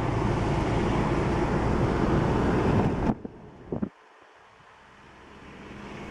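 Steady road and engine noise inside a moving car, with a low hum and some wind buffeting on the microphone. About three seconds in it cuts off abruptly, and a couple of short clicks follow in much quieter surroundings.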